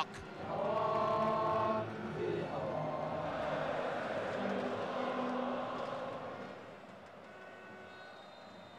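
A national anthem sung by a large stadium crowd, with held notes at first and then a massed, blurred mass of voices that fades away in the last couple of seconds.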